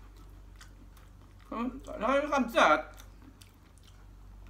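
A man chewing food, with faint small clicks, and from about one and a half seconds in a short voiced mumble with his mouth full, lasting about a second.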